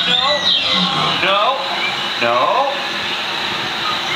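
A man's voice calling out "no" several times over a steady background hiss of crowd noise.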